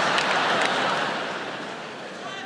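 Large arena audience laughing and applauding, the sound dying away over the second half.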